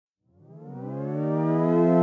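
Intro music opening with a synthesizer tone that fades in from silence about a third of a second in. It glides briefly upward in pitch, then holds steady while growing louder.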